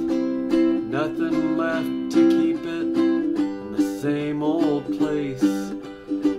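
Ukulele playing a slow run of strummed chords, each chord ringing on until the next.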